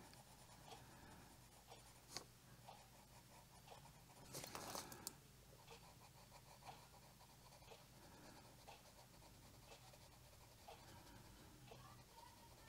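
Faint scratching of a colored pencil shading on coloring-book paper in short strokes, with a louder stretch of scratching a little past four seconds in.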